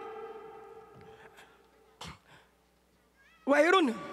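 A man's amplified voice pauses, its echo fading over the first second. There is a short click about two seconds in, then a single drawn-out spoken word near the end.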